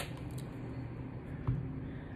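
Quiet handling and shuffling of a deck of oracle cards, with a single soft low knock about one and a half seconds in.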